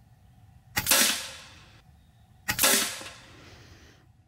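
FX Impact M4 .22 PCP air rifle firing two shots about two seconds apart, each a sharp report that fades over about a second.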